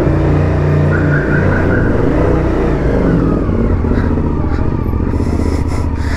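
Suzuki V-Strom adventure motorcycle's engine running as the bike pulls away and rides out onto the street, its note rising and falling with the throttle.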